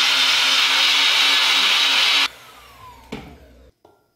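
Personal bullet-style blender running steadily, mixing a hot liquid matcha drink, then switched off a little over two seconds in, its motor whine falling as it spins down. A single click follows about three seconds in.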